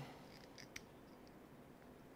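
Near silence, with a few faint small clicks from a hex driver turning small screws into a model-car differential locker, most of them about half a second in.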